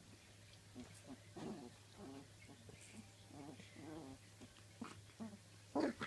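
Three-week-old Labrador puppy making a string of faint, short play-growls and grunts while mouthing at a trouser leg.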